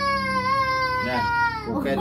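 A young child's long, drawn-out crying wail, high-pitched and slowly falling, that breaks off near the end and gives way to voices.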